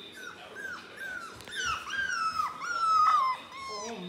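A four-week-old Labrador puppy whining: a run of short cries that each fall in pitch, coming one after another and growing longer and louder, loudest about three seconds in.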